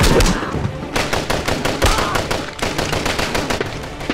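Rapid, sustained machine-gun fire, shot after shot in quick succession, loudest at the start, with a short lull about half a second in.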